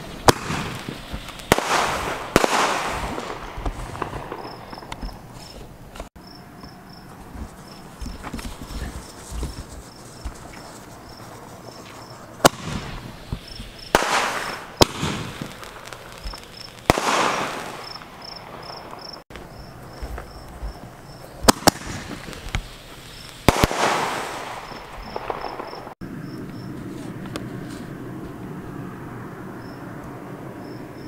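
Fireworks going off: sharp bangs every few seconds, in scattered clusters, several followed by a second or two of fading hiss and crackle. Crickets chirp steadily in the background.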